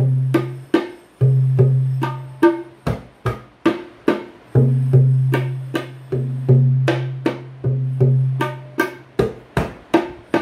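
Tabla pair played solo in a kaida theme: sharp, ringing strokes on the wooden dayan, about two to three a second, alternating with sustained deep bass notes from the metal bayan that ring out for a second or more before fading.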